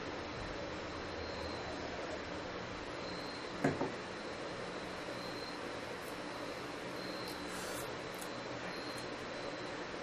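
Steady room tone: a low hum and hiss with a faint high whine, broken by one brief soft sound about three and a half seconds in.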